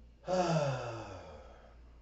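A person's breathy, voiced sigh, about a second and a half long, falling in pitch as it fades.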